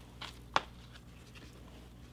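A paperback book set down onto a stack of paperbacks: a light tap, then a sharper click about half a second in.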